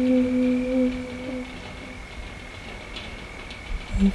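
A lone unaccompanied singing voice holds a sung note for about a second and a half, then it stops and a pause follows, with a faint steady high whine in the background.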